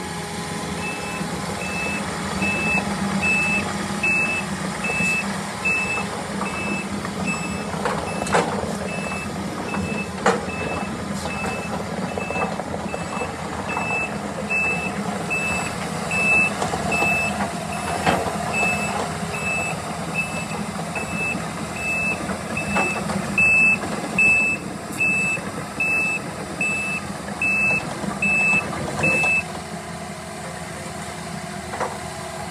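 Takeuchi compact excavator's travel alarm beeping steadily, about three beeps every two seconds, over its diesel engine running as the machine tracks across gravel on rubber tracks. A few sharp knocks come from the moving machine along the way.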